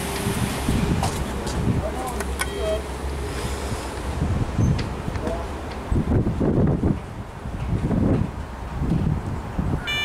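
CAF Class 4000 diesel multiple unit pulling out of the station, a low rumble that fades over the first few seconds. In the second half, gusts of wind rush across the microphone in irregular bursts.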